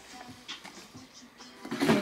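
Quiet handling sounds with a few small ticks, then a short, louder rustle near the end as the next fragrance box is picked up.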